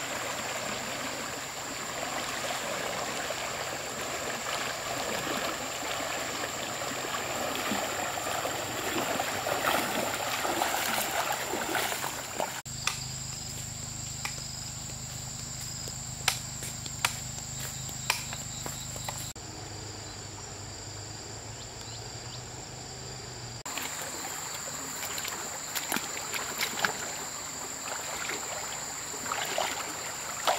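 Water splashing and swishing as a person wades through a shallow stream, over a steady high-pitched insect drone. For about ten seconds in the middle the water sound stops, leaving a low steady hum with a few sharp clicks, before the wading splashes return near the end.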